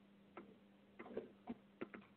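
Near silence on a conference call line: a faint steady hum with a few faint, irregularly spaced clicks.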